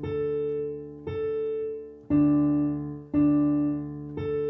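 Small portable electronic keyboard playing a slow run of chords, one struck about every second, four in all, each held and fading before the next.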